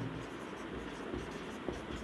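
A marker pen writing on a large paper drawing sheet, faint and steady, with one light tick near the end.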